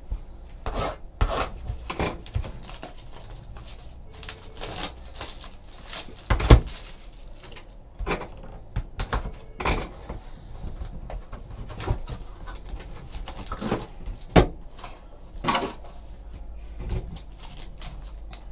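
Hands handling and opening a small cardboard trading-card box: scattered taps, scrapes and knocks of cardboard, the loudest about six and a half seconds in and again near fourteen seconds.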